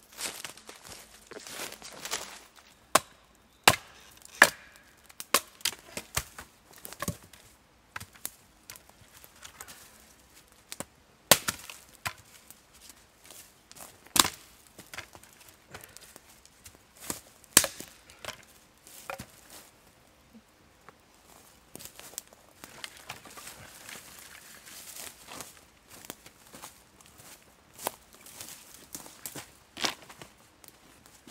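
A large survival knife chopping sticks of wood: irregular sharp chops a second or several apart, with lighter cracks and rustling between them.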